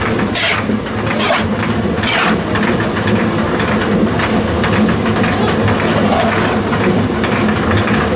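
Water-driven millstones running with a steady low rumble. In the first couple of seconds a metal scoop scrapes and pours cornmeal into a sack in several short strokes.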